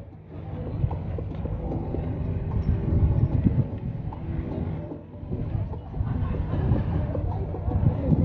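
Wind buffeting the microphone: a low, uneven rumble that swells and fades in gusts, strongest about three seconds in and again at the end.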